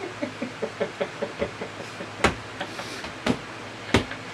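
Muffled closed-mouth laughter, a quick run of short hums about five a second, from a person with a whole bouillon cube in the mouth. It is followed by three sharp clicks in the second half.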